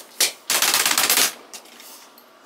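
A stack of paper sheets riffled quickly through the fingers, a fast fluttering rattle lasting under a second, just after a single short click.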